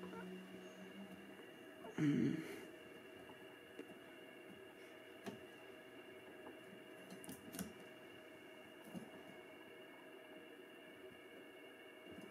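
A man clears his throat once about two seconds in; otherwise faint scattered ticks and rubbing from fingers twisting a tight D-loop-cord knot down a compound bowstring's serving, over a steady faint room hum.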